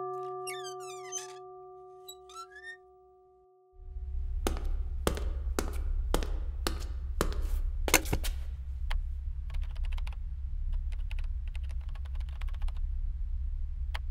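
A held musical chord fades out under a few high chirps. About four seconds in a steady low hum starts, with a run of sharp clicks about half a second apart, then quicker, lighter clicks of typing on a laptop keyboard.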